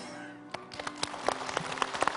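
Studio audience applause starting about half a second in, scattered claps thickening into steady clapping, over soft background music.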